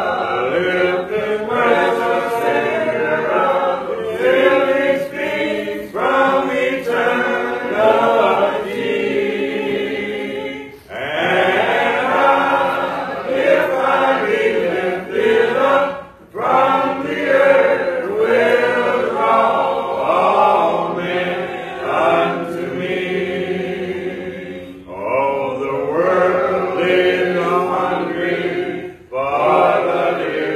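Congregation singing a hymn a cappella, with no instruments. The voices run in long sung phrases with short breaks between them.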